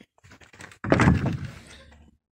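A single heavy wooden thud about a second in, with a short ring after it: a freshly sawn oak board being flipped open onto the stack to show the bookmatch.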